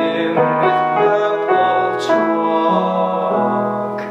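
Piano accompaniment of a classical art song, playing slow sustained chords in a short interlude between sung phrases.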